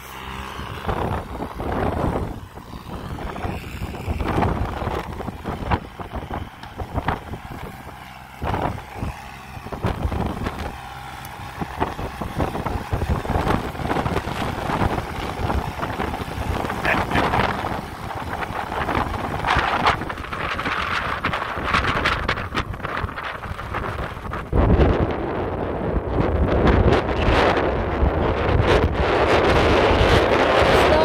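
Wind buffeting the microphone in gusts over a Kubota compact tractor's diesel engine running as it drives around. It gets louder for the last few seconds as the tractor passes close.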